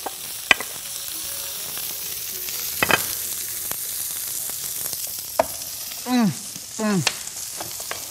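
Pieces of meat sizzling steadily in a ridged grill pan, with a few sharp clicks.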